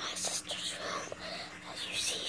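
A person whispering, over a faint steady hum.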